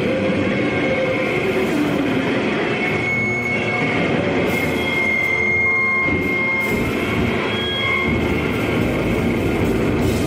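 A live powerviolence band playing a loud, dense wall of distorted guitar noise, with a high, steady feedback squeal that drops in and out.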